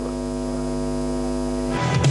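Steady electrical mains hum on the audio line, a constant buzz made of several even tones. A music sting cuts in near the end.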